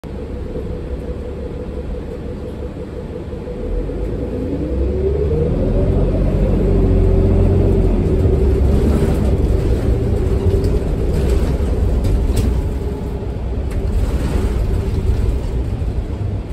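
Inside the cabin of a New Flyer XD40 bus with a Cummins L9 diesel and Allison B3400xFE transmission. About four seconds in, the engine and drivetrain rumble grows louder as the bus accelerates, with a whine that rises in pitch and then holds steady. A few light rattles follow.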